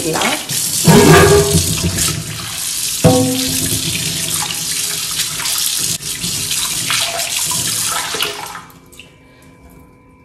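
Tap water running hard into a stainless steel sink, splashing over a cast iron dosa tawa as soap is rinsed off it by hand. About three seconds in there is a single ringing metal clank, and the water stops about a second before the end.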